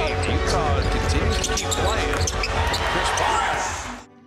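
Live basketball game audio: a large arena crowd's steady rumble with a basketball being dribbled on the hardwood court. It cuts off just before the end.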